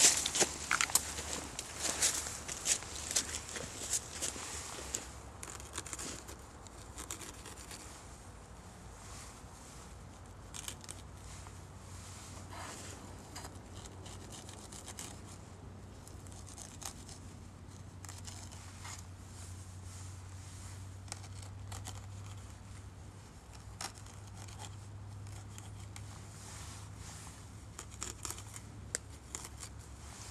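Footsteps crunching over thin snow for the first few seconds, then quieter, scattered snapping, scraping and tearing as dry, hair-like fibres are cut and pulled off the vines on a tree trunk. A low steady rumble runs underneath.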